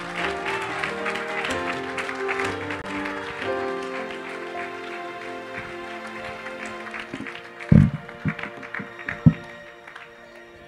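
A congregation applauding over soft, held instrumental chords, the clapping fading away over the seconds. Near the end come two loud, low thumps.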